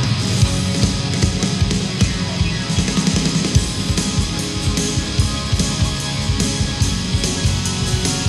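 Live rock band music from a soundboard recording: electric guitar and bass over a driving drum-kit beat.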